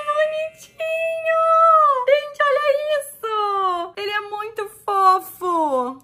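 A woman singing a short tune in a high voice. It opens with long held notes, then moves through a run of shorter notes that slide up and down.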